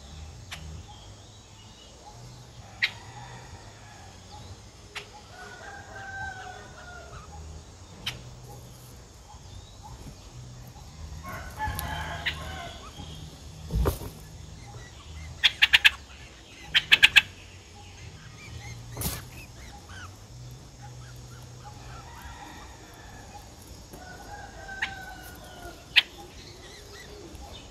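A rooster crowing faintly in the background, twice, with other birds calling. Two quick runs of sharp clicks around the middle are the loudest sounds, with a few single clicks scattered through.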